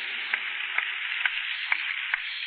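Steady hiss of a low-fidelity talk recording, with faint clicks scattered through it, about four a second.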